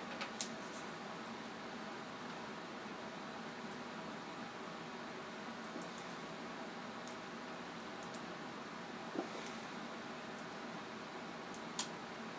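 Low steady room hum with a few sharp little clicks and crinkles, the loudest just after the start, as fingers pick a plastic seal off the cap of a small glass mini-growler bottle.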